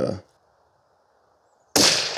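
A single rifle shot from a bolt-action precision rifle firing a handloaded test round, coming near the end: a sharp crack with its echo dying away over about a second.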